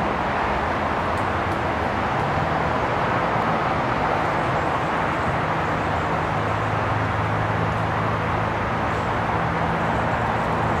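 Steady outdoor background noise, with a low steady hum that comes in about two seconds in and grows stronger past the middle.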